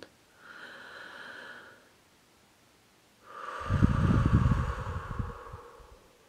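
A woman's slow deep breath: a soft inhale of about a second and a half, a pause, then a longer, louder exhale with a low rumble.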